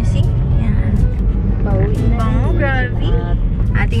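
Steady low rumble inside a car's cabin, with a voice rising and falling briefly in the middle.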